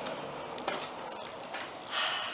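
Cardboard shipping box being handled and opened: soft scraping and rustling of cardboard with a couple of light taps.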